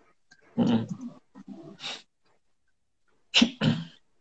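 Brief, indistinct voice sounds from a person: a few short utterances with gaps between them and a silent stretch in the middle.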